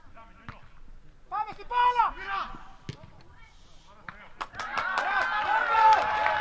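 Players' shouts across a football pitch, with sharp knocks of the ball being kicked; from a little past halfway several voices shout at once, growing louder near the end.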